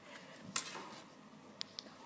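Faint handling noise in a quiet room: one sharp click about half a second in, then two small, light clinks near the end.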